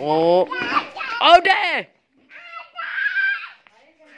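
Children's voices shouting and calling out, high-pitched, the loudest a cry that falls in pitch about a second and a half in, followed by a short pause and more calling.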